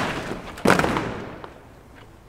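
A rank of soldiers stamping their boots down together on the road as they complete an outwards turn: one sharp, crashing stamp about two-thirds of a second in that dies away within half a second.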